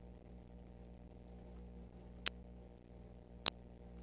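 Two short, sharp clicks a little over a second apart, past the middle, over a steady low hum.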